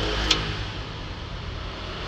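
Clear plastic display case being handled and opened, giving a few light clicks over a steady low background rumble.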